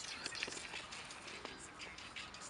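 Faint whispering, a hushed voice with no clear words, heard as a soft irregular hiss.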